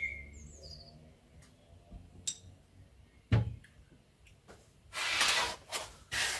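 A quiet stretch with a few faint high bird chirps in the first second and a small click and knock in the middle, then a short breathy rush of hissing noise near the end, the loudest sound here.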